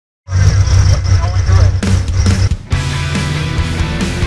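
Loud heavy rock music that starts suddenly after a moment of silence and changes to a steadier passage a little under three seconds in.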